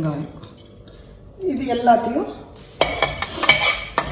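A metal spatula scraping and clinking against a steel pan, stirring whole spices as they fry, starting about three seconds in as a quick run of sharp clicks.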